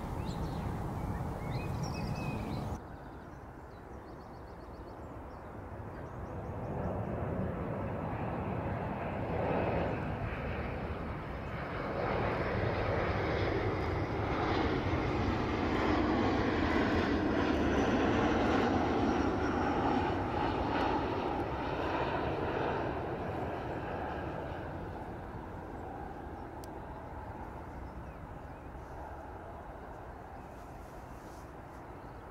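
Distant roar of a four-engine jet airliner flying high overhead at cruise altitude. It swells to its loudest about halfway through and then slowly fades as the aircraft passes. A different background sound cuts off abruptly about three seconds in.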